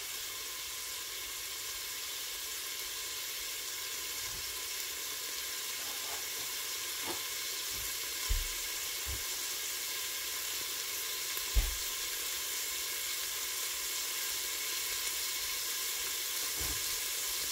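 Green beans frying in butter and bacon grease in a pot, a steady sizzle that grows slightly louder, with a few soft low thumps, the clearest about 8 and 11.5 seconds in.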